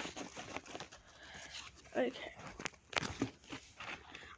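Soft rustling and a few light clicks of stationery being handled and pushed into a fabric zip pencil case.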